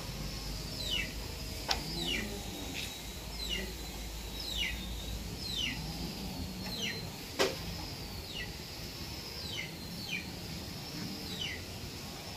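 A cow being hand-milked into a steel bowl: a short, falling squirt of milk roughly every second, in time with the hand strokes. Two sharp clicks stand out, one early and one past the middle.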